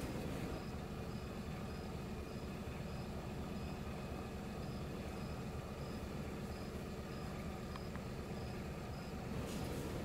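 Steady low background rumble, with a faint high-pitched pulse repeating about twice a second.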